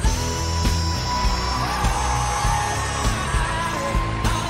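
A singer holding one long, high sung note over a pop-rock backing track with a steady drum beat.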